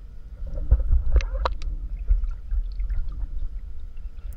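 Muffled underwater rumble of water moving around a submerged handheld camera as a snorkeler swims, with a few sharp clicks about a second in.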